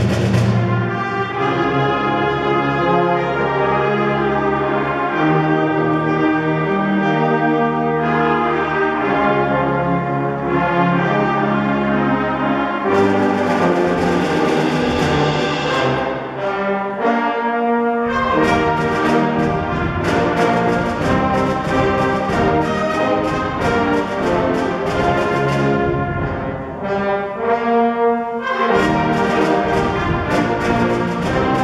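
Live concert band playing a brass-heavy Western film-theme medley, trombones and horns to the fore over sustained chords. About halfway through, a driving rhythmic percussion beat comes in under the band.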